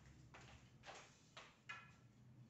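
Near silence, with a few faint footsteps.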